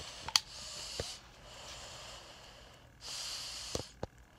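Breathing close to the microphone, three breaths about a second each, the last the loudest. A few light clicks, likely the phone being handled, fall between them.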